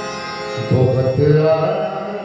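A male singer holding a long, wavering note over a harmonium's sustained chords, in a live South Asian vocal performance. Drum strokes come in under the voice about two-thirds of a second in.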